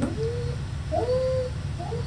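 A dog whining in three short high-pitched whines, the longest about a second in, over a steady low hum.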